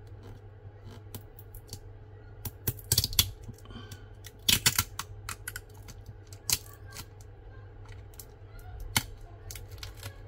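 Scattered sharp clicks and light crackles of fingernails and plastic on a phone battery and frame as the battery's blue adhesive pull tab is picked loose, with the loudest clusters about three seconds in, around four and a half seconds, and near the end.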